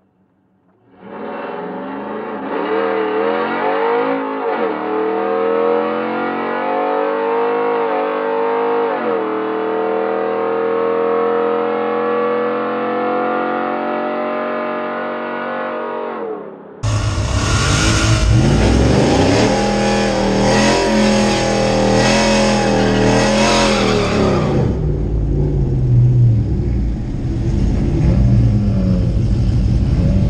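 Cammed Ram HEMI V8 pickup on a nitrous-assisted quarter-mile pass, heard from inside the cab. The engine pitch climbs under full throttle, drops at two upshifts, then keeps pulling. About two-thirds of the way in the sound cuts to a louder, rougher engine noise close to the microphone, which settles to a lower rumble near the end.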